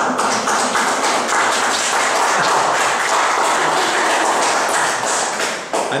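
Audience applauding steadily with dense hand claps, dying away near the end.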